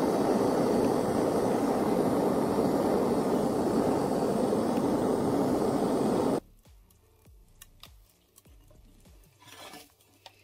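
Gas blowtorch flame running steadily against a brick, then cut off suddenly about six seconds in. Afterwards only faint clicks and a brief scuff of the brick being handled near the end.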